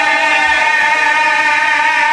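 A man's voice chanting a devotional majlis recitation, holding one long, steady note, amplified through microphones.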